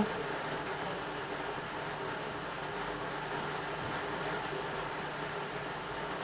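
Steady background hum and hiss with no distinct knocks or clicks.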